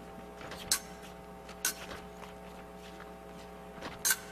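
Two sharp clicks about a second apart, with a few fainter taps, from épée fencers' footwork on the fencing strip as the bout opens, over a steady hum.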